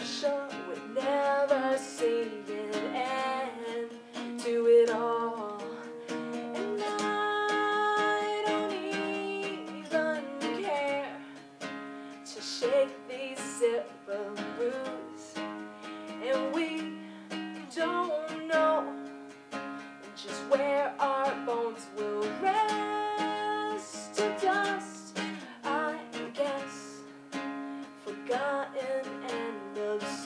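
Acoustic guitar strummed in steady chords with a woman singing the melody over it, a live two-person acoustic performance.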